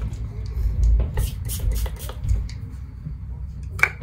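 A pump body-mist spray bottle being sprayed: a quick run of about five short hisses starting about a second in, with a few low handling bumps.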